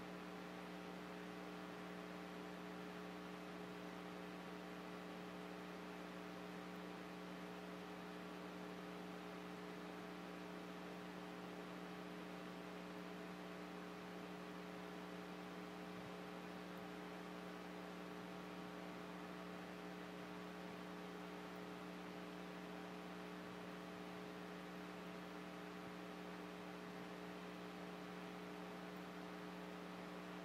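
Faint, steady electrical mains hum with several overtones over a background hiss, unchanging throughout.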